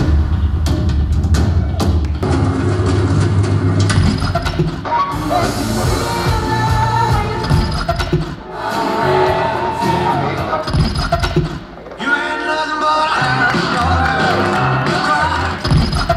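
Live stage-show music with singing over a theatre sound system, heard from the audience: a string of short snippets of different songs, cutting abruptly from one to the next every few seconds, as in a radio-tuning segment.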